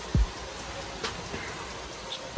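Steady hiss of rain falling outside an open garage, with one short low thump near the start.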